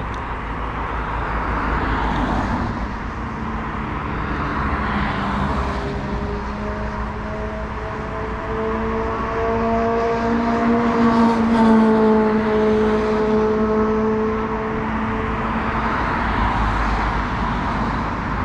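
Road traffic passing by, a steady rush of tyres and engines that swells and fades every few seconds. In the middle a vehicle's engine hum grows louder, peaks, and fades again.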